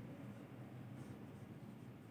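Faint strokes of a marker pen writing on a whiteboard, over a low steady room hum.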